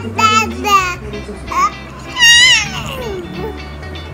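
A baby babbling in short, high-pitched wavering calls, then one longer call that slides down in pitch, over background music.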